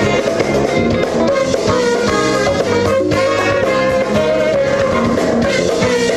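A live band plays with a horn section of saxophone and trumpets over electric guitar and drum kit.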